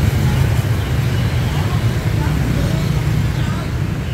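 Steady low rumble of street traffic, with faint background chatter.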